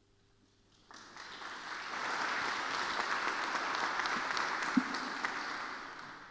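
Audience applauding, starting about a second in, swelling to a steady level, then fading away near the end.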